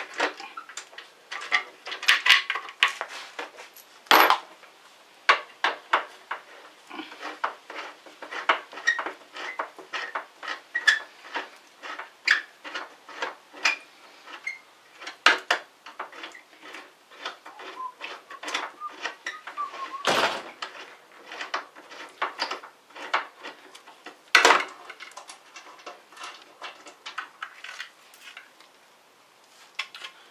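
A screwdriver working the screws out of a motorcycle's chrome rear-fender trim: a long, irregular run of small metallic clicks and clinks, with a few louder knocks.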